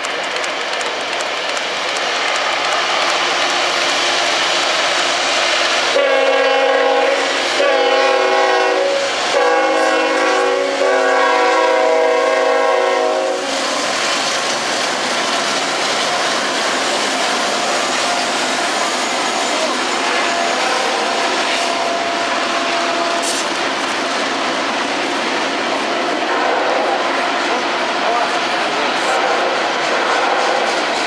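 CSX diesel freight train sounding its locomotive horn as it comes through: a chord blown in a few blasts about 6 to 13 seconds in, the last held longest. Then come the steady roll and clatter of the locomotives and loaded freight cars passing on the track.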